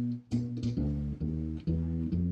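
Gut-strung Engelhardt Swingmaster upright bass played through its Barbera bridge pickup and amp: a run of single plucked notes, about two a second.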